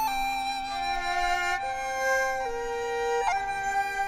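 Chinese bamboo flute (dizi) holding a long high note, with a quick ornamented slide into a new note about three seconds in, over a small Chinese orchestra ensemble whose strings move through slower lower notes beneath it.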